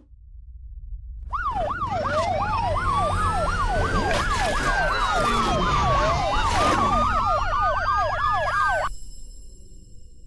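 Police-style electronic siren over a deep rumble: a fast yelp sweeping up and down three to four times a second, layered with a slower wail that rises and falls. The sirens cut off suddenly near the end, leaving the rumble to fade.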